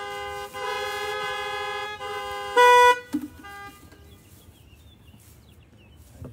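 Several car horns honking at once, overlapping long and short blasts in steady, chord-like tones that break off about three seconds in: a drive-in congregation sounding its horns in place of applause or an 'amen'.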